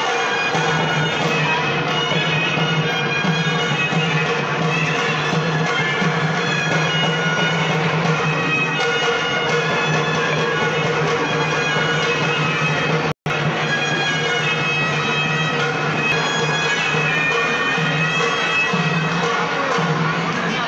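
Traditional shehnai music: a reedy double-reed melody wavering and ornamented high above a steady held drone. The sound cuts out for an instant a little past halfway, then carries on.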